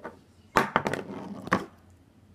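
Plastic Toxic Waste candy drum being handled, clattering: a quick run of sharp clicks and knocks a little after half a second in, and one more knock about a second and a half in.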